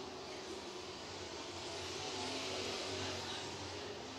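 Super truck race engines running on a dirt oval, heard from a distance as a steady hum. It swells gently past the middle as trucks pass and eases near the end.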